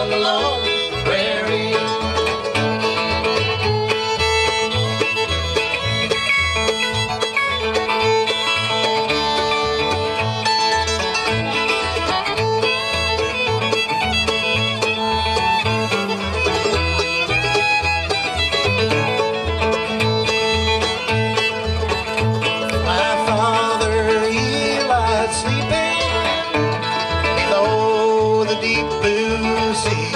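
Instrumental break in a bluegrass song: a fiddle carries the melody over a strummed resonator guitar, with a steady bass beat about twice a second.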